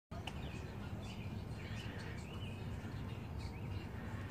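Outdoor ambience: a steady low rumble with a few short bird chirps scattered through it.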